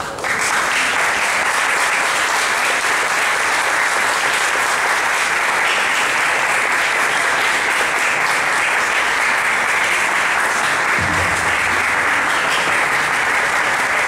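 Audience applauding, starting suddenly and keeping up a steady, even clapping throughout.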